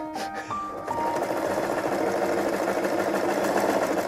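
Electric sewing machine running at a steady, fast stitch, starting about a second in, as a rapid even rattle. Background music with a few held notes at the start.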